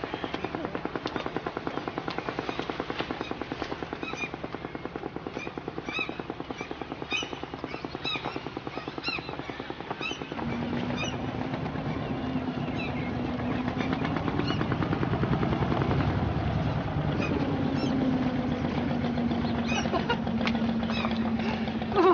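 Small wooden motorboat's engine running with a fast, even putt-putt. About ten seconds in, a steady low hum joins and the engine grows louder as the boat comes close.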